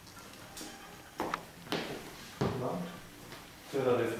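Brief phrases of quiet, unclear speech, with a couple of sharp clicks from hairdressing scissors snipping through a held section of hair.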